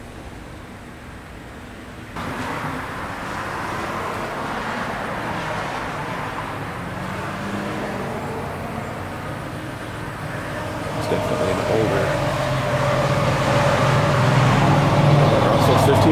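Road traffic noise, with a motor vehicle's engine hum growing louder over the last five seconds as it approaches.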